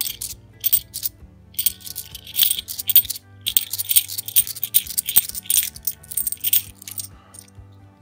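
A stack of cupro-nickel 50p coins clinking as they are slid off one by one between the fingers, in quick irregular clicks. Faint background music runs underneath.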